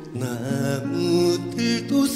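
A Korean trot ballad recording: a male voice sings long, held notes with vibrato over a sustained band accompaniment.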